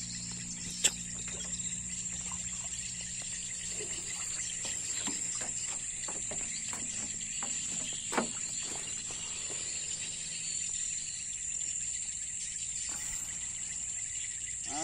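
A steady high-pitched insect chorus from the grassy wetland, with two sharp knocks, one about a second in and a louder-looking one about eight seconds in.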